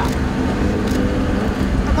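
Racing-boat outboard motor idling with a steady low drone.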